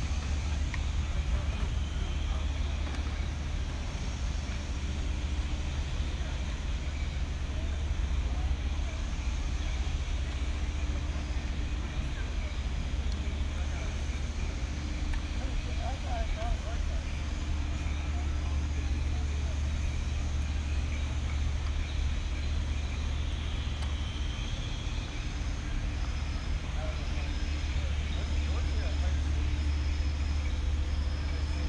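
Outdoor walking ambience: a steady low rumble throughout, with faint voices of people nearby.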